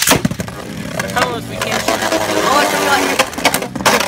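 Two Drain Fafnir Beyblade Burst tops ripped off a string launcher and a light launcher into a clear plastic stadium, a sharp clack at the launch, then spinning, scraping and clashing with a dense rattle, and another loud hit near the end.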